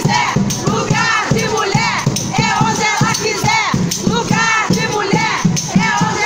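A crowd of women's voices shouting and chanting together, with a percussion beat underneath.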